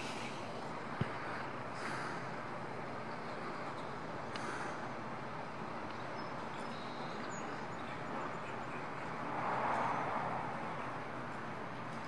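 Steady background noise of a large indoor riding arena, with a short knock about a second in and a swell of noise about ten seconds in.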